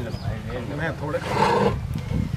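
Voices talking, with a louder, rough burst of sound about one and a half seconds in.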